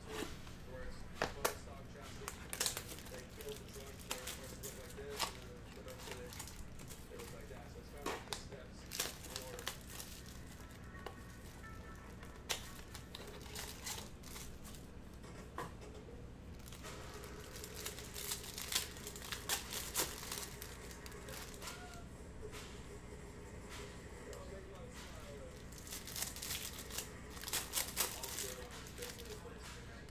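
Trading-card packaging being opened and cards handled by hand: crinkling and tearing of wrapper and cardboard, with sharp clicks and taps of cards and plastic holders, coming in bursts.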